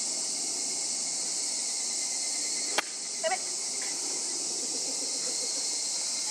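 A 7-iron strikes a golf ball from a toe-down slope about three seconds in: one sharp click. The shot was hit fat, the club catching the ground before the ball, and pulled left. Insects keep up a steady high buzzing chorus throughout.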